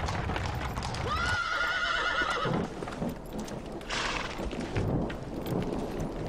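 A horse whinnies once for about a second and a half, over the clip-clop of hooves from a horse-drawn carriage. A brief breathy burst follows about four seconds in.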